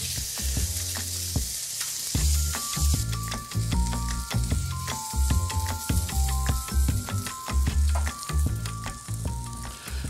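Cubes of wagyu beef sizzling in a hot cast-iron pan, the sizzle brightest in the first few seconds, with the meat juices catching and burning onto the pan. Background music with a plucked melody and a pulsing bass comes in about two seconds in.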